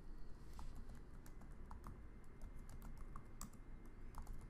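Typing on a computer keyboard: faint, irregularly spaced keystrokes.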